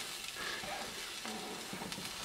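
Quiet, steady sizzle of oiled bread slices frying in a hot nonstick griddle pan, cheese melting on top.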